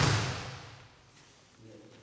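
Two grapplers' bodies hitting the floor mat as a back-arch throw lands: one sharp thud at the very start that rings out in the hall and dies away within about a second.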